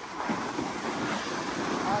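Steady hiss and scrape of snowboards sliding over packed snow, mixed with wind on the microphone.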